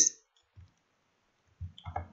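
A few faint computer keyboard and mouse clicks in an otherwise quiet room while a line of code is copied and pasted, after a spoken word ends at the very start.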